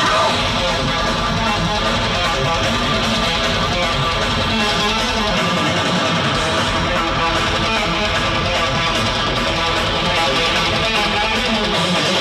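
Metalcore band playing live through a festival PA: distorted electric guitars, bass and drums, loud and continuous.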